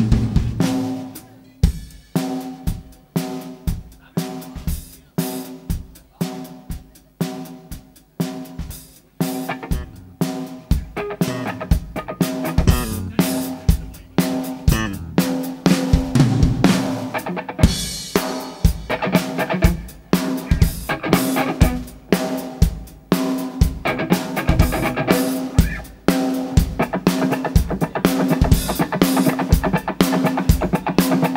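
Live blues-rock band playing: a drum kit with bass drum and snare keeping a slow, steady beat under electric bass and electric guitar. The playing grows fuller and busier about ten seconds in.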